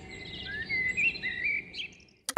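Birds chirping in short, wavering calls over a faint background hiss, as a recorded nature ambience at the start of a song.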